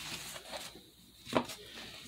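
Paper sticker sheets of a gift-tag book rustling as a page is flipped over, with one sharp click about a second and a half in.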